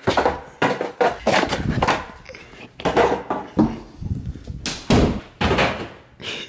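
Interior door being shoved shut and banged against, an irregular run of thuds and knocks, about two a second.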